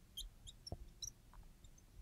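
Faint, brief high squeaks of a felt-tip marker writing on a glass board, a scatter of them as a word is written, with one soft tap about two-thirds of a second in.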